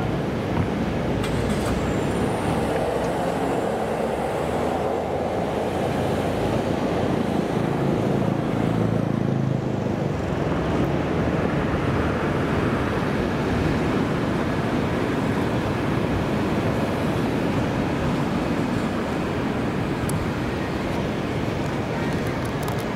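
Busy city street traffic: a steady, dense noise of passing cars, with a deeper rumble swelling about eight to ten seconds in.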